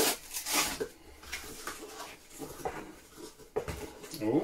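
Packing tape being ripped off a cardboard box, a rasping tear in the first second, followed by quieter cardboard rustling and light knocks as the flaps are handled, with a sharp click about three and a half seconds in.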